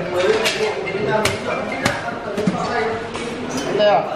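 Indoor talk with a few sharp clinks of a metal spoon on small ceramic bowls as topping is spooned into them.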